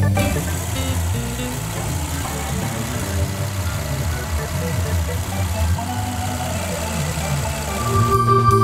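Background music with a steady engine sound underneath: the 2016 Infiniti QX60's V6 running at idle, with a constant hiss.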